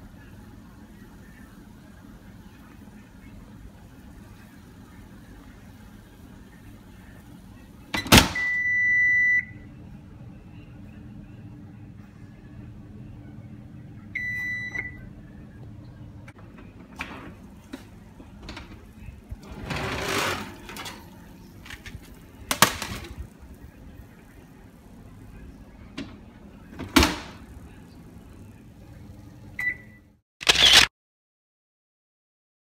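Electronic beeps from a Whirlpool oven's control panel. A click is followed by one long beep about eight seconds in, and a shorter beep about six seconds later, over a low steady hum. Then come several sharp knocks and clatters.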